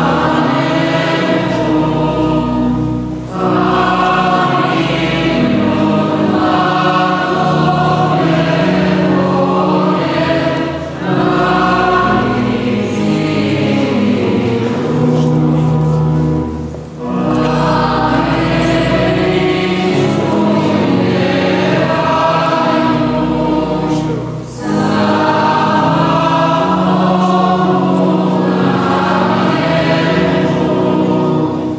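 Many voices singing a church hymn together in long, held phrases, with brief pauses for breath between them.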